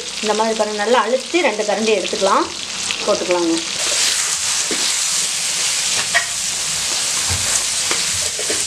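Whole brinjals frying in oil in a kadai, sizzling steadily while being stirred, just after kulambu chilli powder has been added to the pan.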